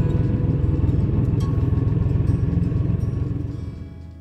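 Motorcycle engine running with a fast, even low pulsing, mixed with background music; the engine fades out near the end, leaving the music.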